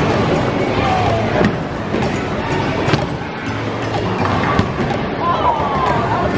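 Bowling alley din: a bowling ball rolling down the lane, then a clatter of pins about four and a half seconds in, over background music and voices.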